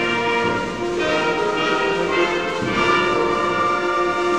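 Amateur concert band of woodwinds and brass playing held chords, with a change of chord about a second in and again past the middle.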